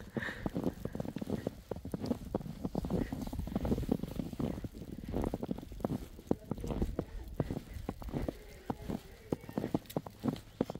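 Footsteps crunching through fresh snow at a steady walking pace, each step a short crunch, over a low rumble.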